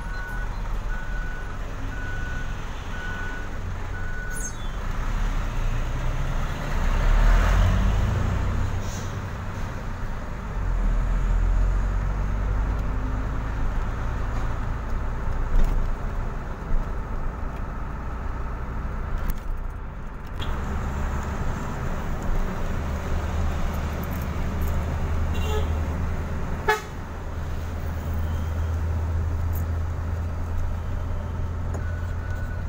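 Truck diesel engine running with a steady low rumble, heard from inside the cab while driving. A repeated beep sounds during the first four seconds, and there are two sharp knocks, about halfway through and near the end.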